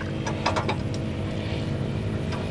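Kubota single-cylinder diesel engine of a Quick G3000 Zeva two-wheel walking tractor running steadily, pulling a plough on cage wheels through a flooded rice paddy.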